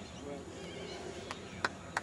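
A single person clapping, sharp claps about three a second that start a little past halfway: applause for a holed putt.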